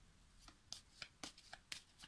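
Oracle cards being shuffled by hand: a quick, faint series of card flicks and slaps, about four a second, starting about half a second in.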